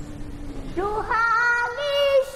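A single high voice singing the opening of a song, jumping between long held notes in a yodel-like call, starting just under a second in after a low held note.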